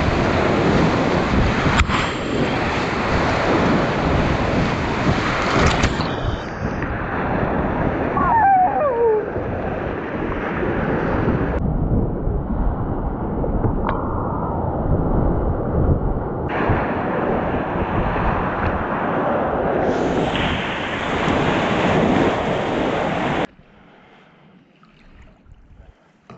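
Loud rushing of big whitewater rapids close around a kayak, with wind on the microphone; it cuts off suddenly near the end.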